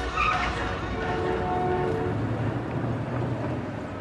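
Street traffic with a bus engine running as it passes, after the last of the song fades out at the start.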